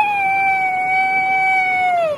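A high voice holding one long, steady vocal note, dipping slightly in pitch at the end.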